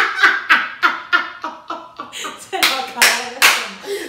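Women laughing hard in quick repeated bursts, with three loud claps about 0.4 s apart a little past halfway.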